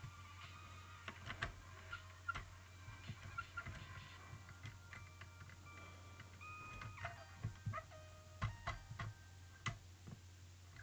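Plastic LEGO pieces clicking and knocking as a brick-built cannon model is handled and its parts moved, in scattered single clicks, several close together in the last few seconds.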